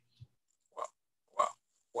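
Two short grunt-like vocal sounds from a person, about half a second apart, heard over a video call's audio.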